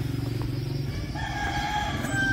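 A motorbike engine dying away as it passes, then a rooster crowing from about a second in.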